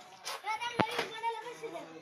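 People talking, with one sharp click just under a second in.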